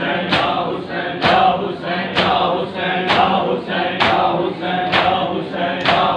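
A large group of men chanting a noha together, with rhythmic chest-beating (matam): the hand strikes land in unison about once a second.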